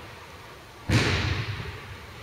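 A single sudden thud about a second in, ringing briefly in the large gym.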